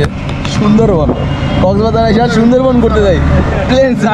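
Men's voices talking inside a moving three-wheeled auto-rickshaw, over the vehicle's steady road and motor noise.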